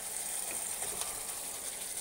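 Thick egg-curry gravy simmering in a pan: a low steady hiss with a few faint clicks as whole fried boiled eggs are tipped into it from a bowl.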